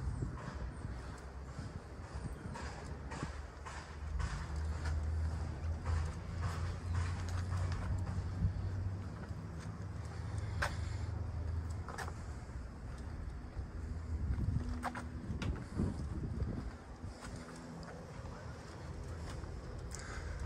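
Footsteps and rustling of plastic tarp underfoot as someone walks slowly, with a few sharp clicks. A low steady hum sounds through the middle stretch.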